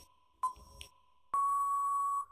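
Countdown timer sound effect in a quiz: a short electronic ping about half a second in, then a long steady beep from about 1.3 s signalling that time is up.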